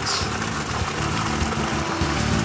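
Steady rushing noise with a low, even machine hum from equipment at a geothermal hot-water well.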